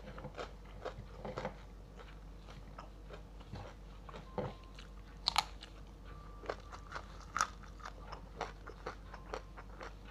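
Close-miked chewing and crunching of fried salted fish with rice: irregular crisp crunches and mouth clicks, the loudest about five and a half and seven and a half seconds in.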